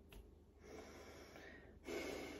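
A woman breathing through her nose: a faint inhale, then a sudden, louder exhale near the end. It is a slow demonstration of the breath of fire, in which the belly button is pulled toward the spine on the exhale.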